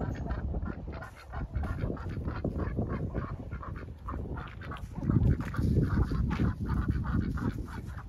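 Domestic white ducks quacking repeatedly as they are herded along, with a louder low rumble about five seconds in.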